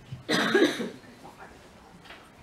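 A single short cough, a fraction of a second in, followed by quiet.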